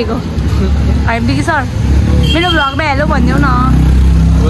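A motor vehicle's engine running close by, a steady low rumble that grows stronger about half a second in, under people's voices.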